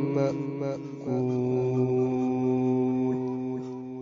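A man's voice reciting the Quran in melodic style, breaking off briefly and then holding one long drawn-out note that fades away near the end.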